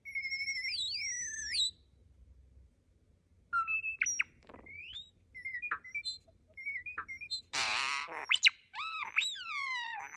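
European starling singing a varied, mechanical-sounding chatter. At the start two whistled notes glide past each other in opposite directions at once. After a short pause come clicks and short whistles, a harsh rasping burst near eight seconds, and a quick run of repeated swooping notes at the end.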